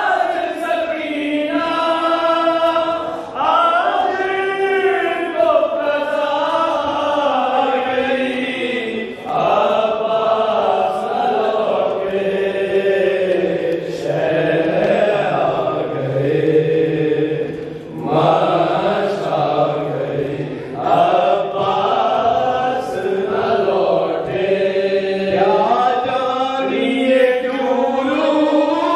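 A noha, a Shia mourning lament, chanted by a group of men, with melodic phrases that are held and then break for short pauses.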